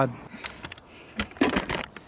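Handling noise as the video camera is moved and set on a tripod: a short high squeak about half a second in, then a few sharp clicks and rustling knocks around a second and a half in.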